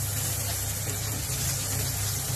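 Diced pork frying and sizzling in a nonstick pan, a steady hiss over a constant low hum.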